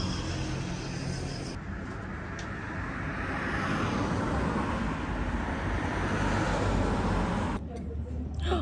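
Road traffic passing close by, a steady rush of tyre and engine noise that swells about halfway through and drops away abruptly near the end.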